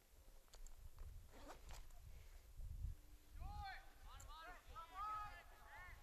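Faint distant shouts from players on a soccer field, a few short calls bunched in the second half, over a low wind rumble on the microphone.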